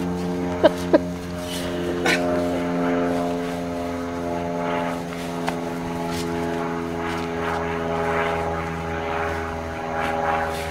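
A steady mechanical hum, like a running engine, holding one pitch throughout, with a few short clicks in the first two seconds.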